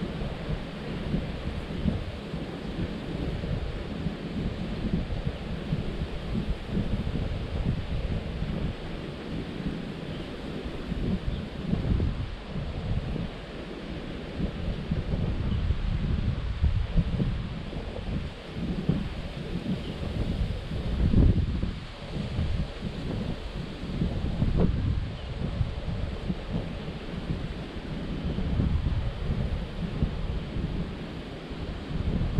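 Wind buffeting the microphone in uneven gusts, a low rumble that swells and falls, over the steady rush of a shallow river.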